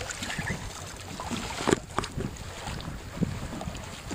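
Wind buffeting the microphone and water rushing and splashing along the hull of a Bembridge Redwing keelboat under sail, with a few sharp knocks about halfway through and again near the end.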